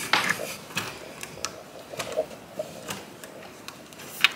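Scattered light clicks and taps from a window blind's pull cord and mechanism as the blind is worked open.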